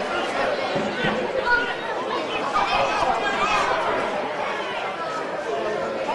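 Several people's voices talking and calling out at once, indistinct and steady, as at a sports ground.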